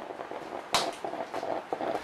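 Handling noise: scattered light clicks and rustling, with one sharp click about three-quarters of a second in.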